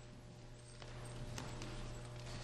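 Footsteps of a person walking in hard shoes across a wooden gymnasium floor: a few separate clicking steps, over a steady low hum.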